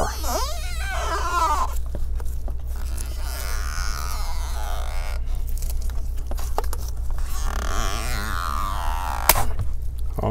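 Stretch-release double-sided adhesive strip being pulled out from under a laptop LCD panel, creaking and squeaking as it stretches, over a steady low hum; one sharp click near the end.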